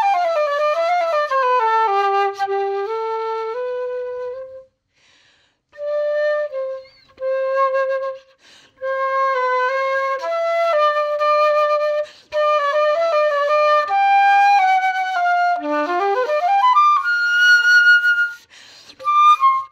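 Solo concert flute playing a classical passage unaccompanied. A descending run opens it, and after a brief pause about four and a half seconds in come sustained notes in the low-middle range. Near the end a quick rising run climbs to a held high note.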